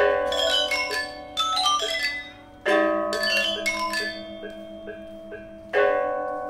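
Balinese gamelan bronze metallophones struck with mallets: loud chords of bright ringing notes, four times, each left to ring and fade.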